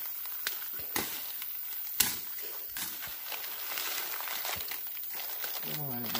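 Footsteps crunching and brushing through dry leaves and undergrowth, with scattered sharp snaps and crackles of twigs, the loudest about two seconds in. A voice comes in near the end.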